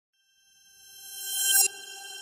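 Electronic sound effect for an animated name card. After a brief silence a bright, steady tone with many overtones swells up, is cut off sharply about one and a half seconds in, and leaves a quieter ringing tail.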